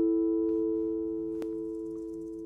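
Background music: a held acoustic guitar chord, its two main notes ringing on and slowly fading away.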